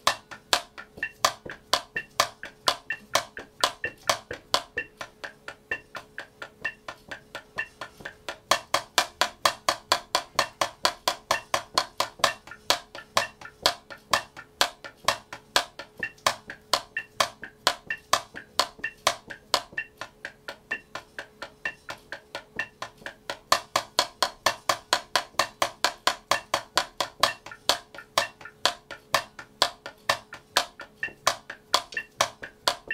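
Wooden drumsticks playing sixteenth-note double strokes on a drum practice pad at 64 beats a minute, an even patter of crisp hits. The loudness shifts from measure to measure, between soft taps, uniformly loud full strokes and alternating accented and unaccented doubles. A faint steady hum sits underneath.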